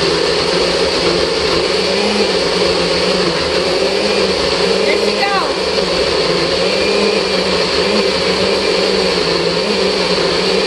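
NutriBullet personal blender motor running steadily at full speed, grinding a thick load of frozen banana, blueberries and almond milk. The bananas are still too frozen, so the blend takes a long time to come smooth.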